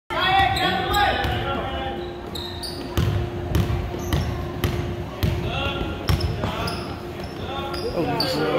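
Basketball bouncing on a hardwood gym floor as players dribble, a run of sharp thuds about every half second to a second that echo in the large hall, with voices calling out over them.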